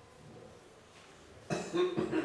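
A man's cough, sudden and loud, about one and a half seconds in, after a quiet stretch.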